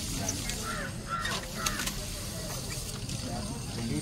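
Scissor blade held against a spinning, chain-driven grinding wheel to sharpen it: a steady grinding noise over the low rumble of the turning wheel. A few short faint calls are heard in the first couple of seconds.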